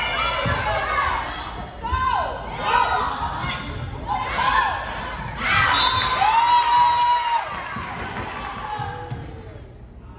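Volleyball players and spectators shouting and cheering during a rally, with short calls throughout and one long held shout around six to seven seconds in, over scattered thuds of the volleyball being hit.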